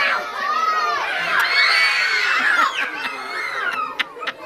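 A group of children shouting and calling out at once, many high voices overlapping, loudest in the middle.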